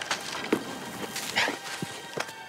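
A man falling onto leaf-covered ground: a sharp thud about half a second in, then a short, high, rising yelp.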